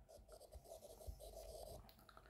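Faint scratching and light tapping of a stylus writing on a tablet's glass screen.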